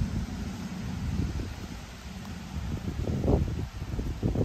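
Wind gusting over the microphone as a low, uneven rumble, with leaves and weeds rustling; a stronger gust comes a little past three seconds in.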